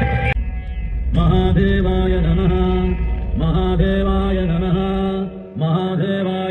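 A voice chants a mantra in long held notes with short pauses between phrases, over a low drone that stops near the end. It begins about a second in, just after loud music cuts off.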